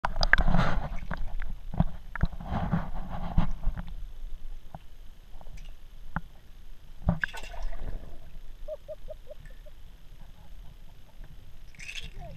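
Water sloshing and splashing around a camera held at the waterline, in uneven surges, with scattered sharp knocks and clicks.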